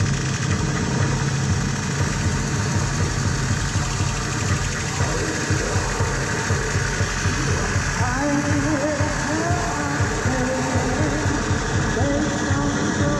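Live experimental noise music from a cart of effects pedals and electronics: a dense, steady wall of noise over a pulsing low rumble, with wavering pitched tones coming in about eight seconds in.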